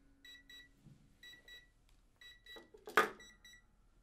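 Electronic timer alarm beeping in quick double beeps, about one pair a second, stopping just before the end. A single sharp knock about three seconds in is the loudest sound.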